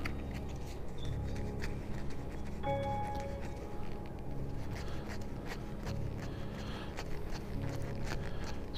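Soft background music with sustained low tones and a few held notes, under faint crinkling of a thin foil candy wrapper rubbed between the fingers to warm its heat-activated print.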